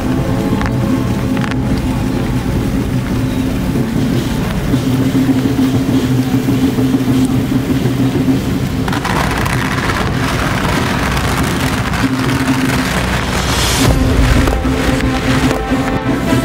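Fishing boat's diesel engine running steadily close by. From about nine seconds in, a rush of water hiss (spray and wake) rises over it for several seconds.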